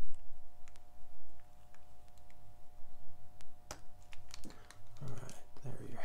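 Light, irregular clicks and taps of a watchmaker's hand-removal tool and fingers on a plastic dial-protector sheet as the hands are lifted off a watch dial.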